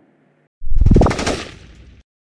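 Logo-sting sound effect: a sudden loud hit about half a second in, carrying a tone that rises in pitch, then fading over about a second before it cuts off sharply.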